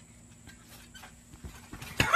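Faint soft thumps of bare feet landing on a trampoline mat, about half a second apart, growing a little louder near the end.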